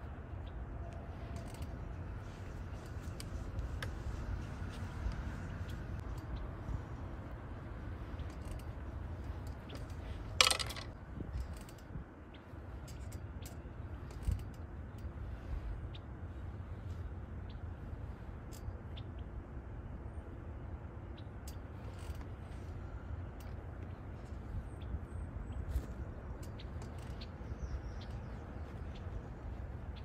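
Low, steady rumble of wind on the microphone, with scattered faint clicks and one short, sharp noise about ten seconds in.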